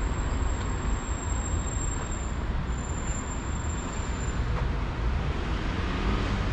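Steady city street traffic noise from cars on the road, with a low rumble throughout. A thin high-pitched whine runs through the first part and stops about four seconds in.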